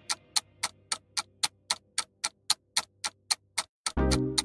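Countdown timer sound effect: a clock-like tick repeating evenly, about four ticks a second.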